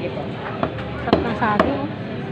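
A butcher's cleaver chopping a whole chicken on a chopping block: three sharp strokes about half a second apart, with voices in between.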